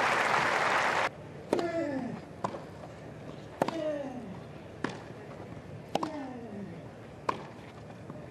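Crowd applause that cuts off about a second in, then a tennis rally: sharp racket strikes on the ball about every second and a quarter, with the server grunting, falling in pitch, on every other hit.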